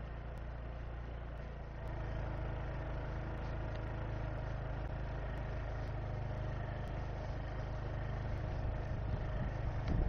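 Small Honda scooter engine running steadily at low throttle as the scooter is walked along under its own power, the motor assisting the push; it gets a little louder about two seconds in.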